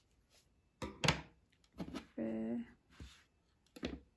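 Scissors snipping through acrylic crochet yarn amid a few light clicks of handling, with a short hummed voice sound about two seconds in.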